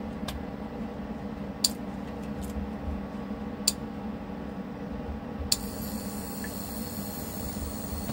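A steady low machine hum, broken by a handful of sharp clicks in the first five or six seconds.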